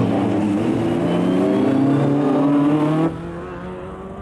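Vauxhall Nova rallycross car's engine revving hard under acceleration, its pitch climbing steadily. About three seconds in the sound drops suddenly to a much quieter background.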